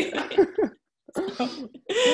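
A woman laughing in short bursts with brief silent gaps between them.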